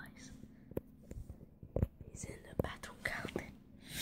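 A person whispering, with a few sharp clicks between the whispers.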